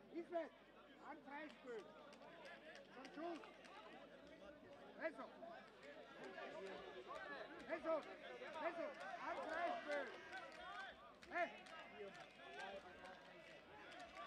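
Players and spectators shouting and calling out, many voices overlapping, with louder shouts about five, eight and eleven seconds in.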